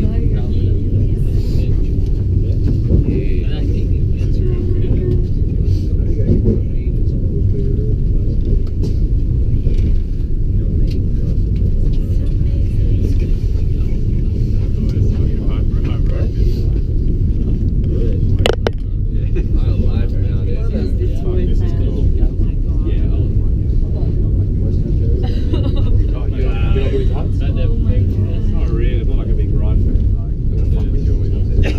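Eiffel Tower lift cabin climbing the tower: a steady low rumble, with one sharp click about two-thirds of the way through.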